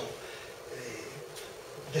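A man's faint, drawn-out hesitation sound, a steady low hum of the voice held through a pause in speech, with a single light click about one and a half seconds in.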